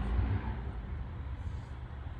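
Low, steady rumble of outdoor city background noise, a little stronger in the first half-second.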